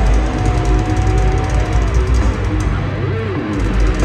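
Heavy metal band playing live, loud distorted electric guitars over a heavy low end of bass and drums. A long held high note carries over the first two seconds, then notes bend up and down about three seconds in.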